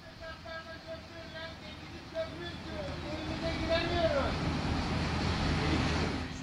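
A crowd of people calling out, faint and distant at first, then swelling into a louder, steady mass of voices over the last few seconds.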